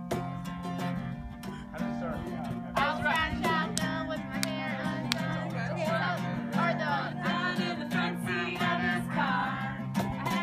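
Acoustic guitar strummed in a steady rhythm, with a voice starting to sing over it about three seconds in.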